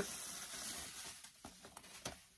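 Bubble wrap being pulled and crinkled off a parcel, a rustling that fades out over the first second and a half, followed by a few small clicks.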